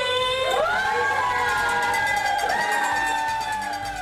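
A group of people cheering with a long, drawn-out "woo" that rises at first, holds, and falls away near the end.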